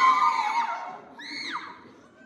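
Several people screaming together in high voices, dying away about a second in, then one short scream that rises and falls in pitch.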